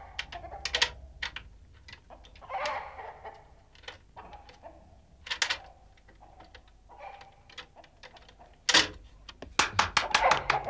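Irregular light metallic clicks and scrapes of lock picks being worked in a door lock, with a few louder clacks near the end as the lock is about to give.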